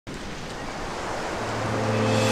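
A rush of noise like surf or wind, swelling steadily louder, with a low steady drone joining about one and a half seconds in: the build-up that opens the soundtrack's music.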